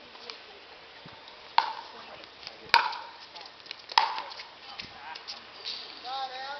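Paddles hitting a hollow plastic pickleball in a rally: three sharp pops about a second and a bit apart, each with a short ring, with fainter clicks between them.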